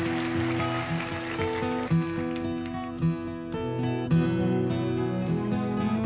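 Acoustic guitars picking a slow folk-ballad introduction over held keyboard chords.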